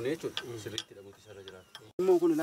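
Short metallic clicks and taps of a spanner working on the fittings of an engine-driven water pump, with low voices alongside.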